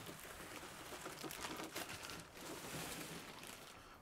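Faint handling noise of a Murphy bed being swung down by hand: soft rustling with a few light taps.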